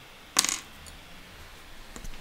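Two small broken end mills dropped onto a desktop, giving one short metallic clink about half a second in.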